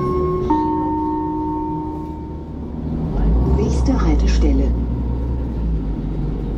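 A two-note descending electronic chime from a city bus's passenger information system, a higher note then a lower one that rings for about two seconds. Under it the bus's engine hums steadily, swelling to a heavier low rumble about three seconds in.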